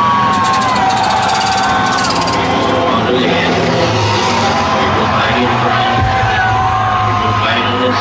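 Air-raid siren wailing over a stadium PA, several tones overlapping, sliding down early on and rising again near the end, over crowd noise and a low drone.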